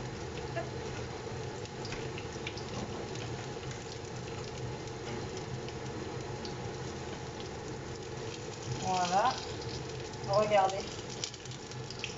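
Breaded chicken and zucchini fritters frying in oil in pans, a steady sizzle, under the steady hum of a kitchen range hood fan.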